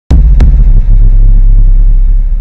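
Logo-intro sound effect: a loud, deep, sustained rumble that opens suddenly with two sharp hits.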